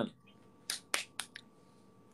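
Four short, sharp clicks or snaps about a quarter second apart; the second is the loudest.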